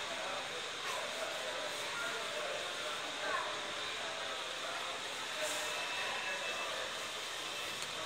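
Mitsubishi passenger elevator's centre-opening doors sliding shut, heard under a steady background of store noise with faint voices.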